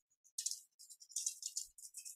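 Faint computer keyboard typing: irregular, rapid, light clicks.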